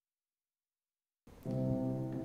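Silence, then about a second and a quarter in, instrumental music starts with a held chord that swells louder.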